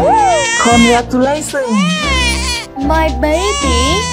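A baby crying in several loud, wavering wails, over steady background music.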